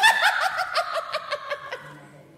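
A sorceress's theatrical cackle: a rapid run of about a dozen high 'ha' pulses, roughly seven a second, that fades away.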